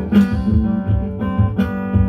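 Acoustic-electric guitar strummed in a steady rhythm, played live through an amplifier between sung lines.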